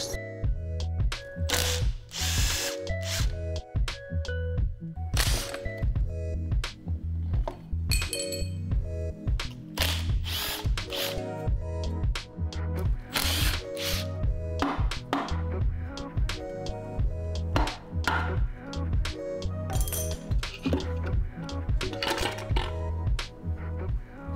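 Background music with a steady bass line, over short bursts of a power tool and clinks and clanks of tools on metal as the starter motor and gearbox are unbolted from the engine.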